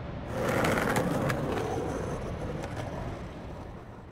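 Skateboard wheels rolling over pavement. The sound swells about half a second in and then gradually fades away.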